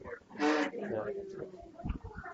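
Speech only: a voice says "yeah", followed by quieter talk.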